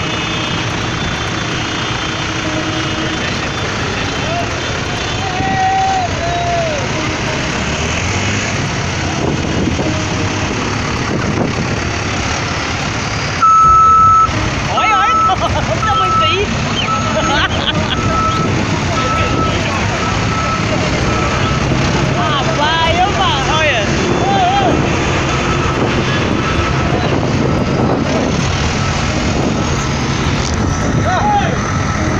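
Farm tractor engines running as a convoy drives slowly past, with crowd voices over them. About halfway through, a loud high beep or horn blast sounds, then a run of short, evenly spaced beeps at the same pitch for several seconds.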